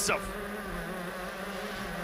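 Honda 125 cc two-stroke shifter-kart engine buzzing at high revs at a nearly steady pitch, heard onboard the kart at race pace.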